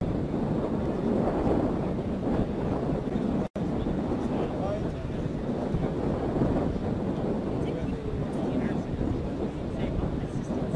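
Wind buffeting the microphone, a steady rough rumble, with a momentary dropout about three and a half seconds in.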